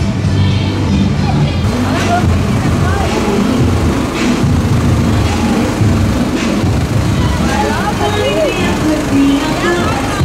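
Music playing from a parade float's loudspeakers, mixed with the tractor pulling the float running and the voices of the crowd.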